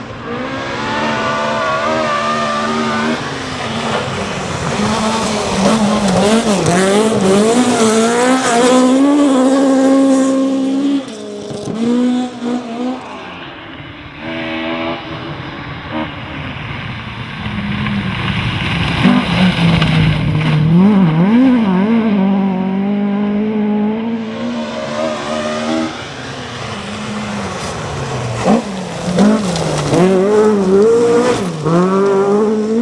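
Rear-wheel-drive rally cars driven hard on a stage, their engines revving up and down as the pitch repeatedly climbs and drops through gear changes and corners. There are several changes of shot, around a third and again about four-fifths of the way through.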